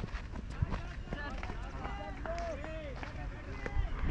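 Cricket players' voices calling out across the field in short shouted calls, heard over a steady low wind rumble on a helmet-mounted camera microphone, with footsteps.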